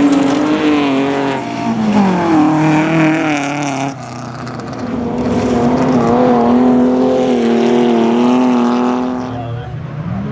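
Folk-race cars' engines running hard on a gravel track. About two seconds in, the engine note falls as a car comes off the throttle. The sound changes abruptly about four seconds in, and from about five seconds a steady high-revving engine note holds until the end.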